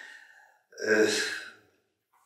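A man's breath at the microphone: a quick intake of breath at the start, then a louder breathy, voiced exhale like a sigh about a second in.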